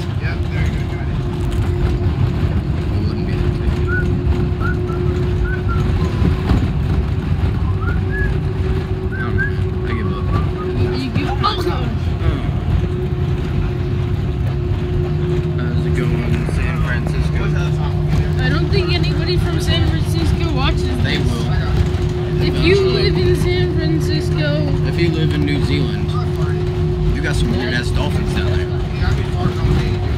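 Bus engine and road rumble heard from inside the moving bus, with a steady engine hum that a second, lower hum joins about halfway through. Faint chatter of other passengers runs underneath.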